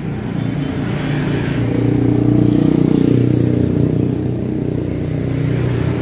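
A motor vehicle engine running steadily, growing louder about two seconds in and easing off slightly after about four seconds.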